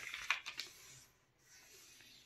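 A sheet of copy paper rustling under hands as they press along a fold and smooth it flat, with a few crisp crackles in the first second, then a softer, fainter rustle.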